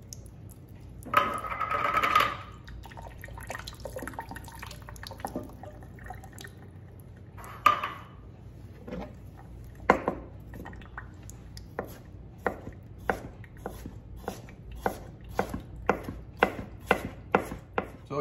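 Whole water chestnuts shaken out of a metal can onto a cutting board with a short clatter about a second in, then a chef's knife rough-chopping them on the board, the knife strikes quickening to about two a second in the second half.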